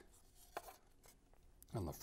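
Faint handling sounds: a few light clicks as a rubber band motor is looped onto the rear hook of a small wooden rubber-powered model plane.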